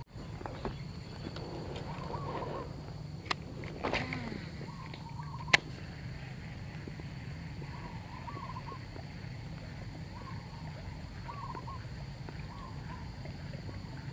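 Quiet open-air ambience with a bird giving a short warbling call every second or two over a faint steady high drone. A few sharp clicks in the first half come from handling the baitcasting rod and reel.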